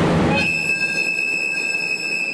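Train wheels squealing on the rails as a passenger train pulls slowly out of a station: a steady high-pitched squeal sets in about half a second in, after a brief rush of noise.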